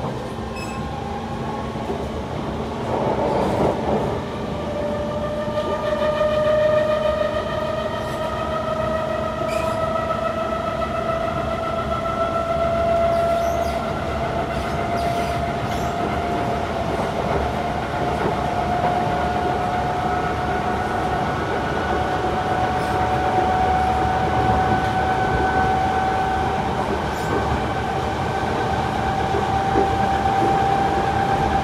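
Kawasaki C151 metro train heard from inside the car as it pulls away slowly. Its traction motors give a strong whine that climbs gradually and steadily in pitch throughout, over a steady wheel and track rumble.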